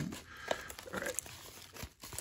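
Tissue-paper wrapping on a small package crinkling and rustling faintly as it is handled and turned over.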